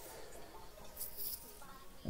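Faint singing over quiet backing music from a cartoon song.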